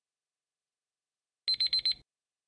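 Countdown timer alarm: four rapid high-pitched beeps in the last half second, signalling that the countdown has run out.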